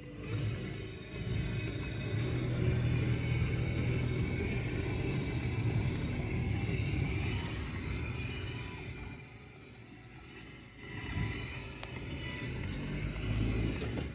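Car engine running, heard from inside the cabin as a low rumble that grows louder, fades for a couple of seconds near two-thirds of the way in, then rises again.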